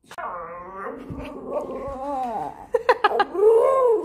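Staffordshire bull terrier making long, wavering vocal sounds: one drawn out over the first two and a half seconds, then a shorter one that rises and falls near the end.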